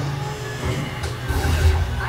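Background music with a heavy bass line.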